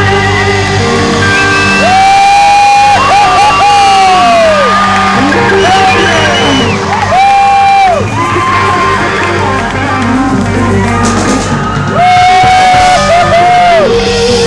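Live rock band playing loud: an electric guitar lead holds and bends long notes over steady bass and drums, with crowd shouts and whoops mixed in.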